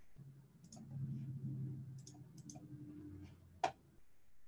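Several short, sharp clicks, the loudest one shortly before the end, over a low steady hum that fades out about three seconds in.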